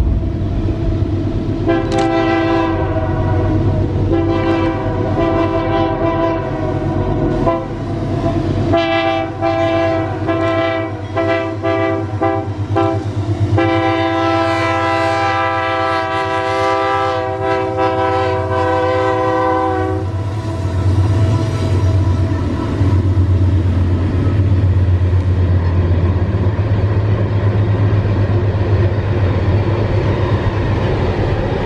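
Air horn of a pair of GE AC44i diesel-electric locomotives hauling an empty ore train uphill: long blasts from about two seconds in, a run of quick short toots around ten seconds in, then one long blast held until about twenty seconds in. Under it the locomotives' diesel engines run steadily, and after the horn stops their low rumble and the empty ore wagons rolling past go on.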